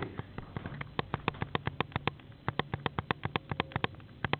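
Camcorder zoom mechanism clicking: a rapid, even run of small clicks, several a second, as the lens zooms in.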